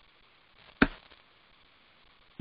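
One sharp tap on the laptop, loud against faint room tone.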